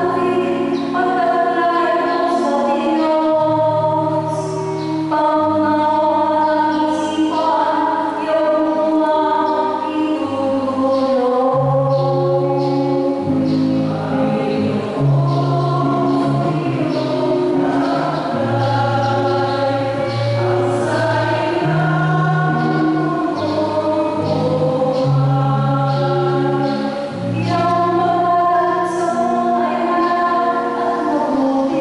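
Choir singing a hymn over sustained instrumental chords, the bass note changing every second or two.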